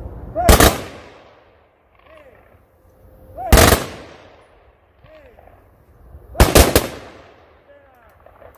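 Funeral honor guard firing party giving the three-volley rifle salute: three loud volleys about three seconds apart, each set off by a shouted command. The last volley is ragged, breaking into three separate cracks.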